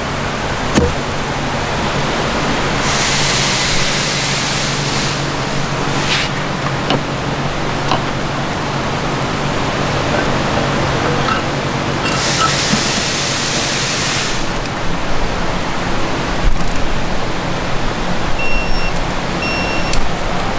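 Steady workshop noise with a low hum, broken by two bursts of hiss of about two seconds each and a few faint clicks of metal parts being handled. Near the end come several short high beeps.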